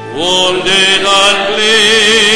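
A solo voice singing with strong vibrato, part of a hymn or sacred song. A new phrase begins with a slide up into the note just after a breath, and a long note is held near the end.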